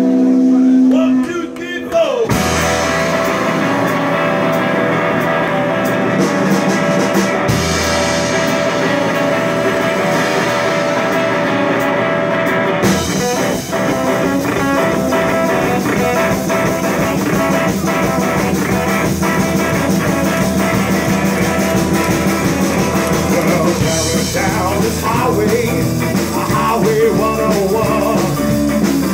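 Live rock and roll trio playing: hollow-body electric guitar, upright double bass and drum kit. A held chord rings for about the first two seconds, then the full band comes in and plays on steadily.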